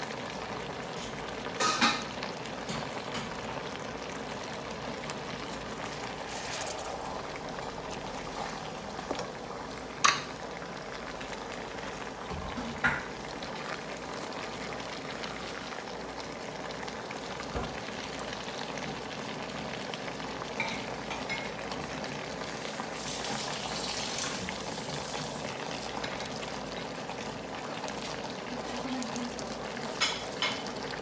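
Beef and vegetable stew simmering in a stone-coated wok, with a steady bubbling and sizzling, while a wooden spatula stirs it. A few sharp knocks of the spatula against the pan, the loudest about ten seconds in.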